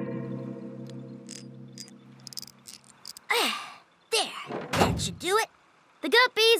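Cartoon soundtrack: a held musical chord fades out. Then come a few short voice-like calls that slide down in pitch, and a thump.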